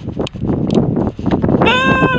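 Outdoor crowd noise with a few sharp clicks, then about a second and a half in a long, high-pitched cry with a clear pitch begins and is held.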